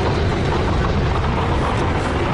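A loud, deep, steady rumble without breaks.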